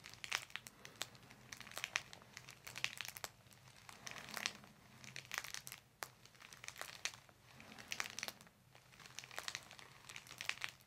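Faint, irregular crinkling and rustling of the paper table cover under the head, with hair and fingers rubbing on it as hands hold and gently shift the neck, coming in small clusters every second or so.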